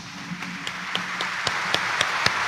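Congregation applauding, the clapping swelling steadily louder, with a few sharp single claps standing out close to the microphone several times a second.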